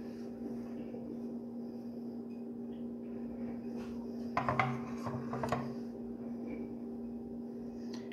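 A steady low hum in a small room, with a woman's voice murmuring briefly about halfway through.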